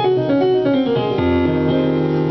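Piano playing a quick descending run of single notes that lands, just over a second in, on a held chord with a deep bass note. It is a gospel-style run over a dominant chord.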